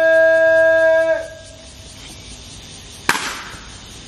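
An honor guard's drill command held as one long, steady shouted note that cuts off about a second in. About three seconds in comes a single sharp crack from the guards' rifle drill.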